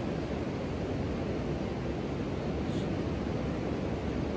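Steady wash of ocean surf and wind on a beach, an even rushing noise with no distinct events.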